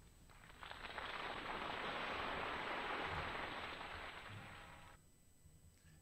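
Applause from a studio audience on an old radio recording, thin and dull in tone. It swells up about half a second in, holds, and dies away about a second before the end.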